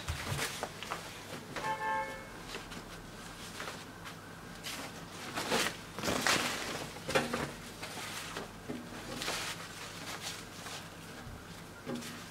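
Printed dress fabric rustling as it is lifted, unfolded and shaken out over a table, in uneven bursts, the strongest a few seconds past the middle.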